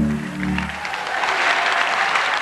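A held musical chord fades out in the first second while audience applause rises and carries on.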